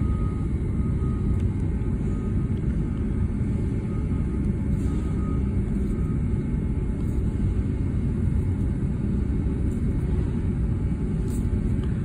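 Steady low rumbling background noise with no speech; a faint high tone comes and goes during the first half.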